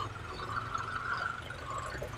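Street traffic noise: motorcycle engines running as the riders move along the road, a steady hum without distinct events.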